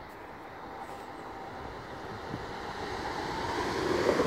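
Great Western Railway Class 802 Intercity Express Train approaching along the line. Its running noise builds steadily louder as it comes close and starts to pass beneath.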